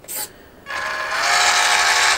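A short click near the start. Then, after about half a second, the WPL B36-3 RC truck's electric motor and two-speed gearbox run with a steady mechanical whir and a faint, slightly rising gear whine for about a second and a half, as the gearbox is shown in one gear and then the other.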